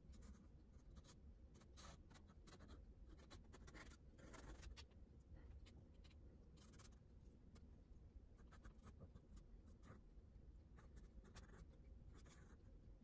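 Faint scratching of a pastel pencil on paper, in many quick, short, irregular strokes.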